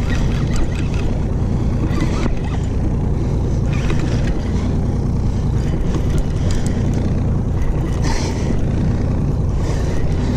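Evinrude E-TEC 90 hp outboard motor idling steadily, with a few light knocks of gear being handled.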